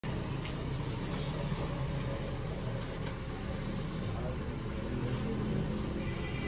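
Honda Crossroad SUV's engine running as the car creeps forward at low speed: a steady low rumble, with a few faint clicks.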